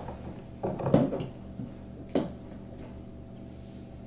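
Knocks and clatter of laminated particleboard furniture panels and metal screw bolts being handled during assembly: a quick run of knocks and rattles about a second in, then one sharp knock a second later.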